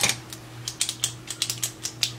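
Light, irregular plastic clicks and clatter of pens being handled while one is searched for and picked up.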